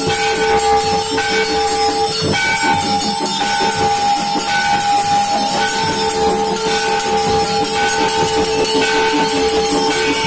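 Temple aarti bells and metal percussion ringing continuously, with a steady ringing tone held throughout and a shorter bright tone that comes back about every second, over a dense jangle of small metallic strikes.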